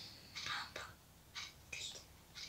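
Faint whispering from a person, in a few short, breathy bursts.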